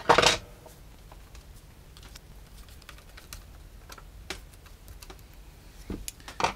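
Hands reassembling a melodeon: scattered small clicks and taps of its wooden end and metal fittings being handled and seated, with one louder knock at the very start.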